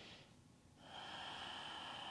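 Faint breathing of a person holding a yoga pose. One breath trails off just after the start, and a longer, steady breath begins about a second in.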